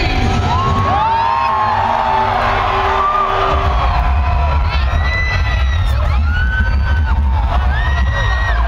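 Loud live concert music heard from within the crowd, with heavy bass and many voices cheering and whooping over it. The bass gets heavier about halfway through.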